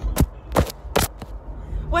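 Several sharp knocks and taps in the first second and a half as a plastic toy lightsaber is swung and bumped about in a cramped space, over a steady low rumble.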